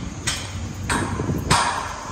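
A steady series of sharp knocks, about one every 0.6 seconds, each trailing off briefly.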